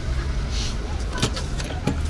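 Steady low rumble of outdoor street background, with a couple of short clicks in the second half.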